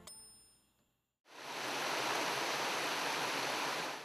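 A brief high ding rings out as the music fades, then after a short silence a steady rush of falling water, a waterfall, starts just over a second in.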